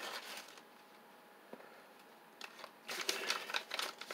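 Paper rustling and crinkling as a small folded paper packet is handled and unwrapped by hand. There is a short spell at the start, a quieter gap, then denser crinkling over the last second and a half.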